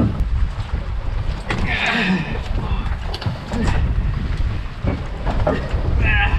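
Wind buffeting the microphone on a boat in rough seas: a steady low rumble with a few knocks, and a faint voice about two seconds in.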